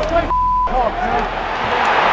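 A man's voice over stadium crowd noise, cut about a third of a second in by a short, steady censor bleep that blanks out a word.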